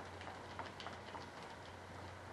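Faint, irregular light clicks and scrapes of hand work with Bondo body filler, over a steady low hum.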